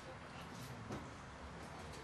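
Faint room noise with low, indistinct voices in the background.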